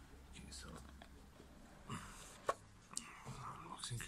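Small cardboard product box being handled and opened: faint rustling and sliding of the lid and tray, with a few light taps and clicks in the second half.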